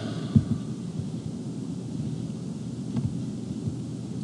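Low, steady rumbling room noise picked up by the lecture microphone, with a faint click about a third of a second in and another near three seconds.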